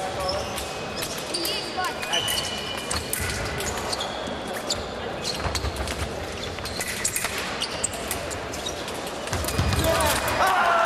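Fencers' footwork on the piste: stamping thuds, shoe squeaks and sharp clicks of blade and equipment, echoing around a large sports hall, with faint voices behind.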